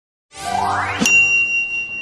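An edited sound effect: a rising musical sweep, then a single bright ding about a second in that rings on as a high, steady tone.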